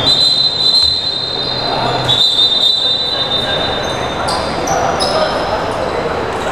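Basketball shoes squeaking on the sports-hall court floor as players move, with high drawn-out squeals about two seconds in and shorter higher ones later, over ball bounces and players' voices echoing in the hall.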